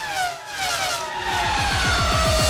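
Sound-effect race car engine passing by in an outro sting, its note falling steadily in pitch. A low engine rumble builds under it from about a second in as the theme music starts.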